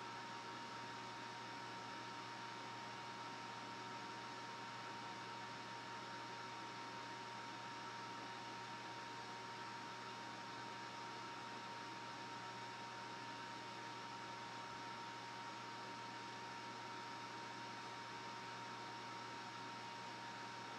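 Steady hiss with a thin, unchanging high hum running through it and no other events.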